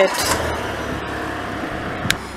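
A steady rushing noise with a low rumble underneath, slowly fading.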